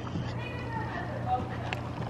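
Faint, indistinct voices over a steady low hum, with a couple of faint ticks.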